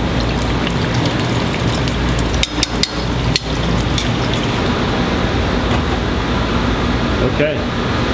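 Tempura-battered green tomato slices deep-frying in fryer baskets of hot oil, sizzling with many small crackling pops over a steady low hum.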